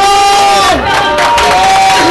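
Crowd cheering and shouting at the cutting of a ribbon, with several long held shouts overlapping, and hand clapping joining in about a second in.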